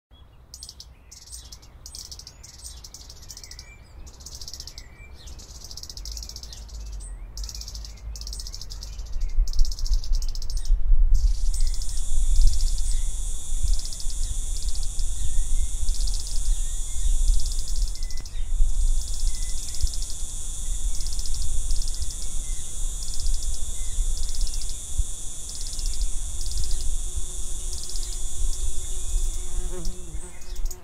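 High-pitched insect chorus with cricket-like trilling, growing louder over the first ten seconds, at first with short breaks. It then carries on steadily with a chirp repeating about once or twice a second over a low rumble.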